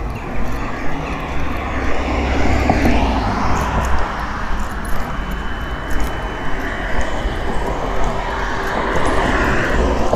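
Steady low engine rumble with a broad rushing noise that swells from about two seconds in and stays up, with light footsteps ticking on paving about once a second.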